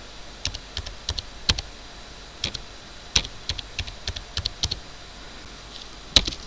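Computer keyboard typing: scattered keystrokes, singly and in short runs with pauses between, as a password is typed into two fields in turn.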